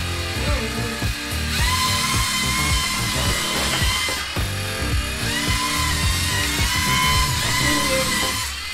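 LEGO Mindstorms EV3 robot motors whining as the sumo robots drive, the whine rising in pitch and holding twice: about a second and a half in and again about five seconds in. Background music with a steady beat plays throughout.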